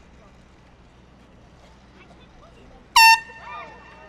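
A single short, loud air-horn blast about three seconds in. It is the signal for the children to rotate to the next sports station.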